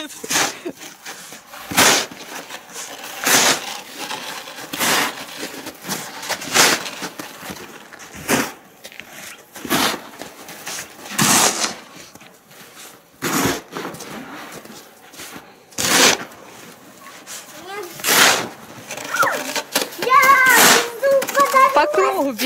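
A snow shovel scraping and pushing snow across the frozen pool surface in repeated strokes, about one every second and a half. A child's voice is heard near the end.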